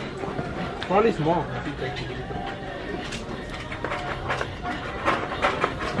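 A few words spoken about a second in, then the steady background chatter and hum of a busy shop.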